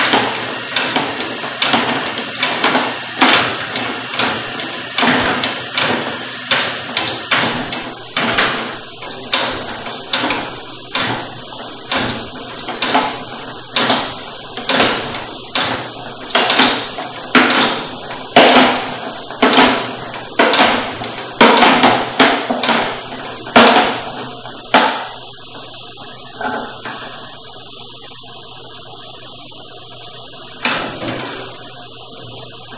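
Sewer inspection camera's push cable being fed by hand into a drain line: a run of sharp knocks and clacks about once a second as the cable is shoved forward in strokes. The knocking stops about 25 seconds in, leaving a steady hiss.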